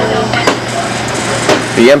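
Two sharp knocks about a second apart, like something hard set down or struck on a wooden counter, with a low steady hum underneath; a man starts speaking just before the end.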